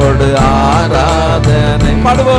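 A man singing a Tamil Christian worship song into a microphone, his voice sliding and bending between held notes, over steady instrumental accompaniment.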